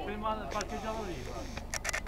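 People talking in Italian, with several voices overlapping, and a few sharp clicks near the end.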